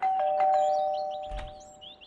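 Two-note doorbell chime, a ding-dong: a higher note, then a lower one a fraction of a second later, both ringing on and fading away over about two seconds. Birds chirp faintly in the background.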